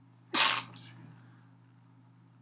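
A man sneezes once: a single short, sharp burst about half a second in.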